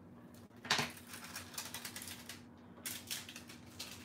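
Thin transfer foil crackling and crinkling in irregular bursts as it is rubbed down hard onto adhesive on card and peeled away, the sharpest crackle about a second in.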